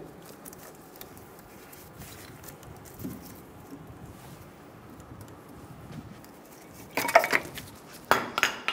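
Faint handling of metal brake parts, with light clicks and taps, then a brief loud burst of metallic clinking and rattling about seven seconds in.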